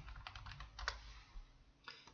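Faint computer keyboard typing: a handful of scattered key clicks while a stock name is keyed into a trading program's search box.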